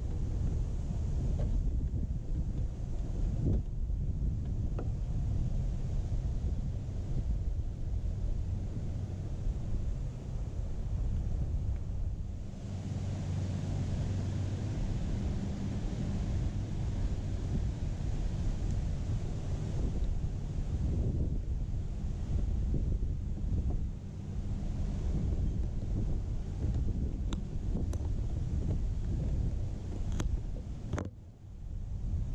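Wind buffeting the microphone: a steady, uneven low rumble, with a few faint clicks scattered through it.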